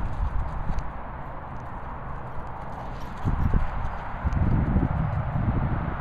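Low, uneven thuds and rumble, getting stronger from about three seconds in.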